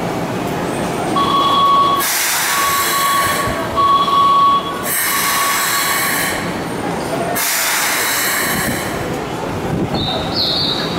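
Closing warning of a station platform door system and train doors: an electronic beep repeats about once a second for several seconds. It overlaps three long bursts of hissing as the doors close.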